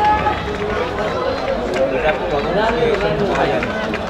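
Several men's voices talking and calling out at once, overlapping and unclear, over a steady low rumble.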